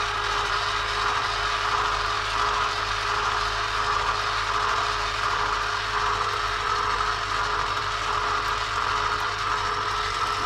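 Electric stirring saucepan's motor running steadily with a constant hum, its paddle turning through a thickened béchamel sauce.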